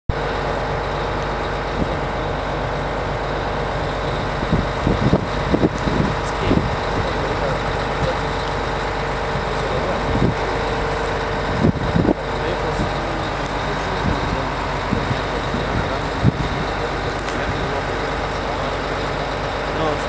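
Idling bus engine right behind the microphone: a steady, loud running noise from the bus as it waits to leave, nearly drowning out the interview voices beneath it. A few short knocks and thumps come through it.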